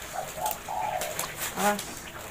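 A dove cooing in short, steady, low notes, with one coo about a second and a half in.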